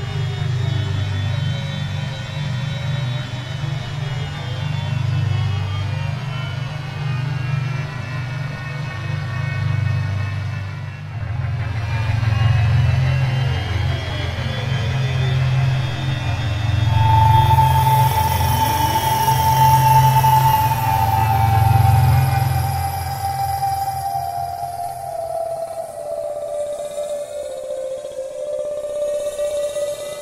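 Synthesizer pad from UVI Falcon 3's 'Downfall' ambient preset, played on a MIDI keyboard: a low sustained drone with many pitch glides sweeping up and down over it. From a little past halfway, a clear tone comes in and steps down note by note while the drone fades.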